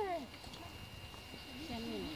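Faint human voices: one voice trails off at the very start and a low murmur of talk comes in near the end, over a faint steady high tone.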